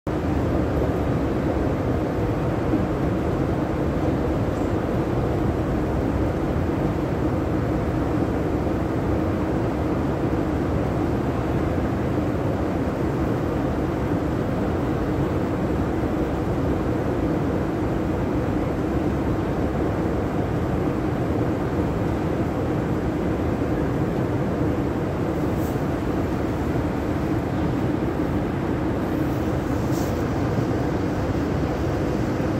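Long, deep metro escalator running: a steady, unbroken mechanical drone and rumble.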